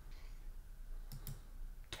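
A few faint clicks, about a second in and again just before the end.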